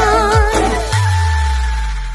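Live band with a female singer performing an Assamese song: her voice wavers with vibrato over drum hits, then the band holds a final chord with a low bass note, which starts to fade near the end.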